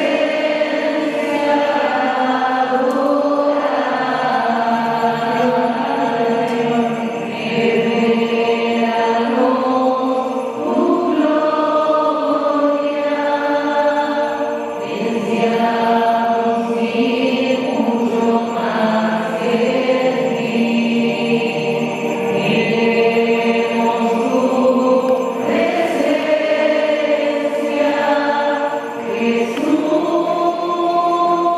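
A choir singing a slow sacred chant or hymn, with long held notes moving in phrases.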